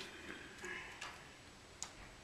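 A quiet room with two or three faint, sharp clicks spread through the moment, and a brief soft breathy hiss about half a second in.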